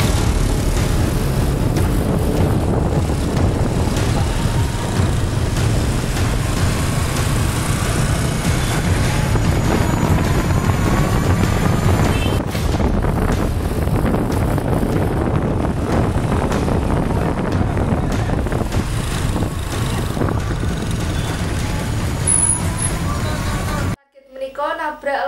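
Motorbike engines running on the move, under a heavy, continuous low rumble of wind on the microphone, with the engine note rising and falling at times.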